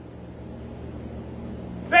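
A pause in the speech with only a low, steady hum and faint room noise. A man's voice starts again right at the end.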